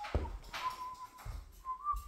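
A person whistling a few short notes, one held and one sliding up, over footsteps on a wooden floor.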